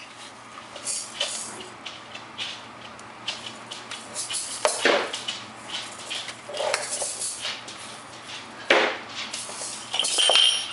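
A toddler handling plastic egg shakers by vertical blinds: irregular light clicks, knocks and short rattles, with a sharper knock near the end.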